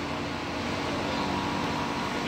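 Mawa (khoa) making machine running: the motor and drive turning the scraper arm in the steel pan make a steady, even hum as thickening milk is scraped around.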